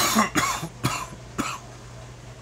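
A man coughing, a run of about four short coughs that grow fainter, a smoker's cough after a hit of cannabis.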